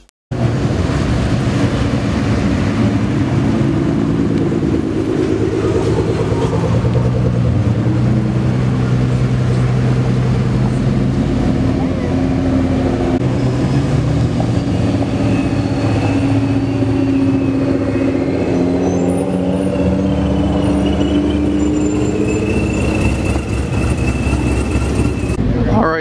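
Car engines running as cars drive slowly past, with engine notes that slowly rise and fall.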